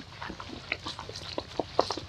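Macaques giving a run of short calls, several a second, the loudest near the end.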